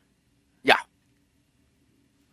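A man saying one short, quick 'yeah' with rising pitch about half a second in; the rest is near silence.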